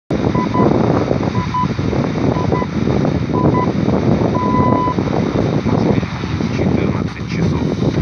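Hourly time-signal pips from a Degen portable radio tuned to a weak, distant FM station: four short high beeps a second apart, then a longer beep about four and a half seconds in, marking the top of the hour. They come through heavy noise and hiss of the faint long-distance signal.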